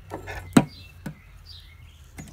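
A few sharp knocks and clicks from handling, the loudest about half a second in, with faint short high chirps behind them.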